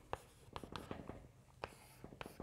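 Chalk writing on a blackboard: a faint, irregular string of short taps and strokes as letters are written.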